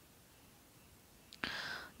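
Near silence, then about one and a half seconds in a small click and a short, breathy intake of air by the narrator just before she speaks again.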